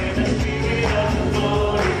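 Live worship band playing with several singers, voices over acoustic guitar and keyboard with a full, steady low end.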